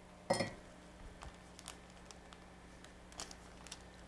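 A small hard object set down on a tabletop with one sharp knock and a brief ring, then a few faint clicks and rustles as paper, fabric and quilting tools are handled.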